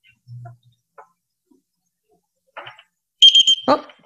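An Arduino buzzer gives one short, high-pitched beep a little over three seconds in. It sounds as the board comes back after a bad pin connection.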